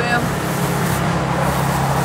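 A steady low motor hum with a wash of background noise.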